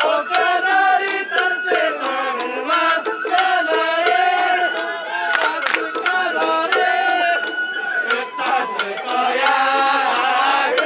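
Sawara bayashi festival music played live by a float's hayashi ensemble: a melody of bending, sliding notes, with one long held note near the end, over frequent sharp drum strikes.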